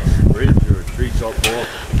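Faint, brief snatches of speech over a loud, uneven low rumble.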